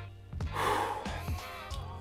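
A man's sharp breath blown out through pursed lips about half a second in, lasting under a second, over background music with a steady low beat.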